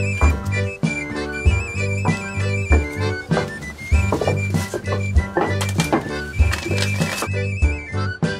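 Background music with a steady beat, a bass line and a high trilling melody.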